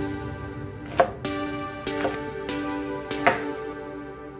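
Chef's knife chopping through a Korean green onion stalk onto a wooden cutting board: three sharp knife strikes about a second apart. Soft background music with sustained tones runs underneath.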